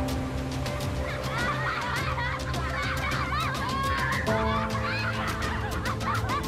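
Background music with held chords and a steady ticking beat. From about a second in, a flock of birds joins it with many short, overlapping chirping calls.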